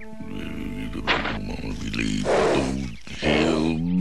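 A cartoon bull character's wordless vocalising, its pitch gliding up and down, over the episode's music score.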